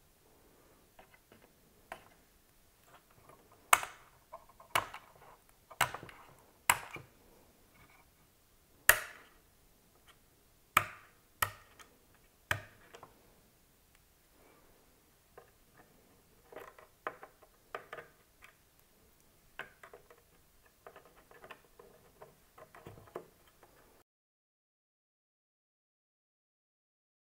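Sharp plastic clicks from DDR4 server memory modules being handled and pressed into a motherboard's DIMM slots, their retention latches snapping shut, about eight loud clicks in the first half followed by lighter ticking and clatter of handling.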